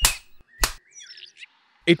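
Two sharp lash sound effects for a beating with a stick, about two-thirds of a second apart, followed by a faint chirp.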